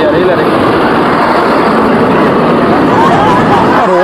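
A loud, steady rushing noise with faint voices under it, dropping away just before the end.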